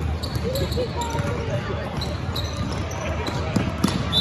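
Basketball game play on a hardwood gym floor: sneakers squeaking and a basketball bouncing, under spectators' chatter. Two sharp knocks come close together near the end.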